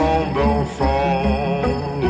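Slowed-down song: drawn-out, layered singing with wavering pitch over a deep, steady bass.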